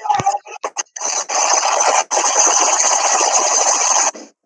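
A loud, steady rasping, rubbing noise that starts about a second in, breaks off for a moment near the middle, and then carries on, preceded by a few short scrapes.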